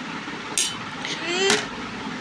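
A metal spoon scraping against a plate of rice, two short sharp scrapes about a second apart, over a steady background hum. A brief rising voice sounds just before the second scrape.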